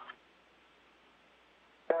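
Near silence on an air-to-ground radio loop: faint line hiss with a low hum between transmissions. Near the end a man's voice breaks in with "Go ahead."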